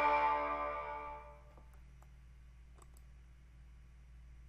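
The song's final strummed guitar chord ringing out and fading away over about a second and a half. After it only a faint low hum remains, with a few small clicks.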